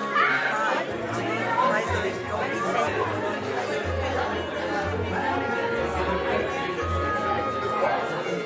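Indistinct chatter of several voices in a large room, with music playing in the background.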